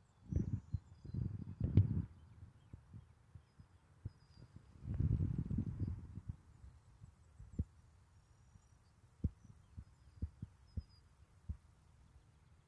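Muffled low rumbling and thumping on the microphone, in two longer stretches near the start and around five seconds in, then single soft thuds about once a second.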